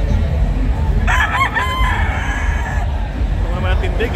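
A gamecock crows once, a call of about two seconds starting about a second in, over a steady low din of the hall.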